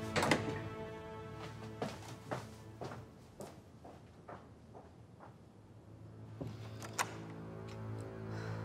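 Low, sustained background score that fades down through the middle and swells again near the end, with a scattering of light, irregular clicks and knocks; the sharpest comes just after the start, another about seven seconds in.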